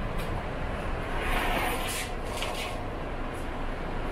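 Rapid Metro train car rumbling as it slows and comes to a stop at a station platform, heard from inside the car, with a hiss lasting about a second and a half starting a second in.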